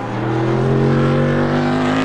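Prototype race car's engine pulling hard, its note climbing steadily as the car accelerates.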